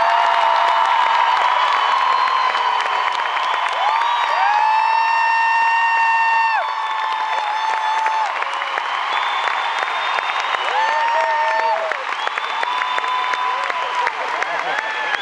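Large concert crowd cheering and applauding a hometown musician's introduction, with many long high screams and whoops held above the clapping. The cheering is loudest for about the first six seconds, then eases a little.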